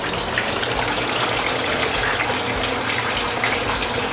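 Thin streams of well water, pumped up from the aquifer, falling from spouts into a stone-lined well basin with a steady splashing trickle.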